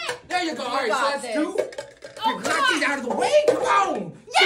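Raised voices exclaiming, without clear words, in a small room.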